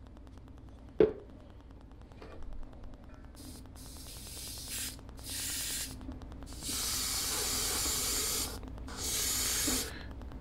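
Iwata Eclipse HP-CS gravity-feed airbrush spraying pearlized silver paint onto a crankbait in five hissing bursts of air, each cut off sharply, the longest about two seconds. A single sharp knock comes about a second in, before the spraying starts.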